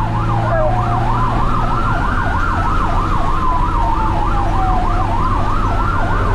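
Emergency vehicle siren heard from the responding rig: a fast yelp cycling about four times a second together with a slower wail that rises, falls and rises again, over a steady low engine and road hum.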